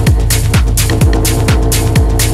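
Techno DJ mix: a steady four-on-the-floor kick drum at a little over two beats a second, with hi-hats between the kicks and a held synth tone.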